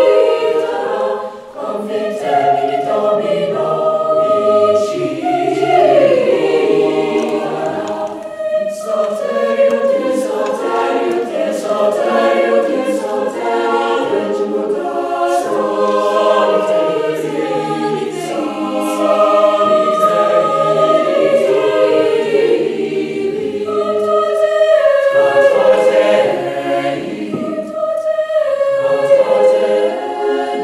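Mixed high school choir singing a Renaissance Latin motet unaccompanied, several voice parts moving together in sustained phrases, with short breaks between phrases about a second in, around eight seconds in and again near the end.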